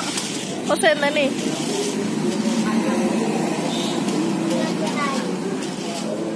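Background chatter of many voices, with one brief high-pitched child's voice about a second in.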